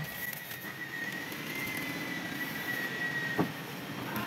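Steady background noise of a car body repair workshop, with a faint high whine that cuts off with a click a little over three seconds in.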